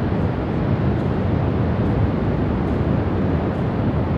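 Wind blowing across the microphone, a steady rushing noise heaviest in the low end, with the distant surf mixed in.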